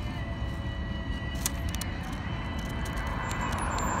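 Steady road traffic noise from a busy street, swelling toward the end as a vehicle goes by, with a couple of faint clicks about a second and a half in.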